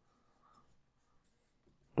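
Faint sound of a marker pen writing on a whiteboard.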